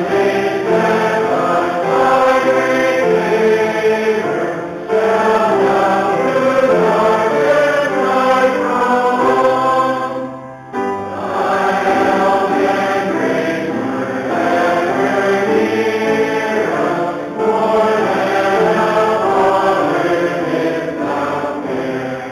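Congregation singing a hymn together, with a short pause between phrases about eleven seconds in.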